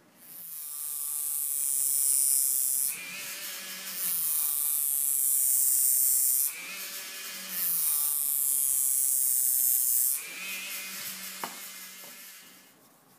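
Handheld rotary tool with an abrasive drum grinding a Solingen steel scissor blade in three passes of two to three seconds each: a loud hiss of grinding over the motor's whine, falling back to the whine alone between passes. A single tick near the end as the tool winds down.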